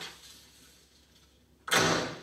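A pause, then near the end one sudden, loud burst of noise that fades within about half a second.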